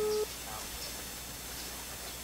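Telephone ringback tone from a phone placing a call: one steady beep that cuts off about a quarter second in, then a pause of faint background while the line rings.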